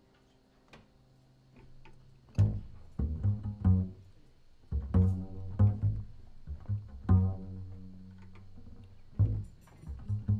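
Upright double bass played pizzicato. After a near-quiet start it begins about two and a half seconds in: a slow line of deep plucked notes, each ringing out and fading, as the intro to a jazz tune.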